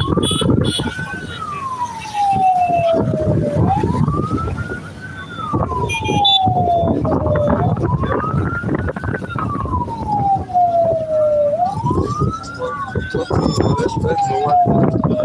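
A wail siren on a procession escort, its pitch sliding slowly up and then down about every four seconds, over the low rumble of motorcycle and vehicle engines on the road.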